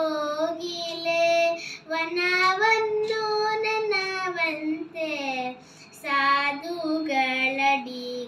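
A girl singing a Kannada Jain devotional bhajan solo, without accompaniment, in long held notes that waver and glide between pitches.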